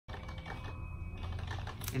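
Fast typing on a computer keyboard: a quick, irregular run of key clicks.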